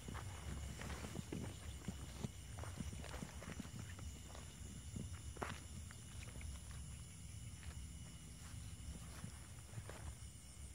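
Footsteps and rustling through dry brush and grass, with irregular light snaps and crackles of twigs and stems, and one slightly sharper crack about five and a half seconds in.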